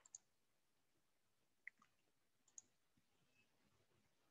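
Near silence with a few faint, short computer mouse clicks: one at the start, one near the middle and one a little later.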